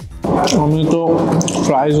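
Quiet background music, cut off about a quarter second in by a man's voice talking loudly.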